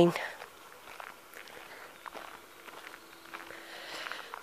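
Faint footsteps of a person walking, a few soft irregular steps, with a faint steady hum from about halfway through.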